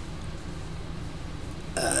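Steady low electrical hum with faint room noise during a pause in speech; a man's voice starts again just before the end.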